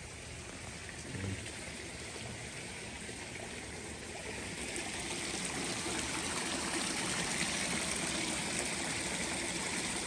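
Water pouring from pipe spouts into a koi pond, a steady trickling and splashing that grows louder about halfway through.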